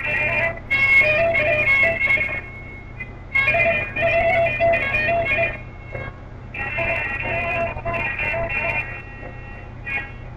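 A plucked string instrument playing a traditional Lori melody in three phrases, each broken off by a short pause.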